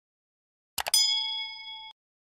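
A bell-like ding sound effect: a couple of quick clicks, then a ringing tone with several high overtones that lasts about a second and cuts off suddenly.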